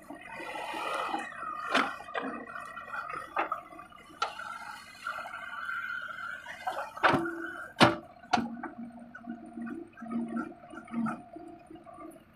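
JCB 3DX backhoe loader at work: diesel engine and hydraulics running with a steady, wavering whine while the bucket digs and dumps soil. A rushing of falling earth comes at the start, and several sharp metal clanks from the bucket and boom follow, the loudest about eight seconds in.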